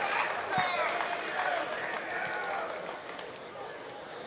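Several voices of players and spectators at a football ground shouting and calling at once, overlapping, dying down toward the end.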